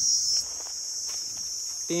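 Insects chirring in a steady, shrill high-pitched drone, which the onlooker mimics as 'ṭiṇ ṭiṇ'. It drops in level about half a second in and goes on more faintly.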